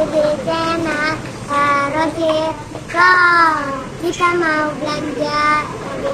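A young girl's high voice singing in short, held sing-song phrases.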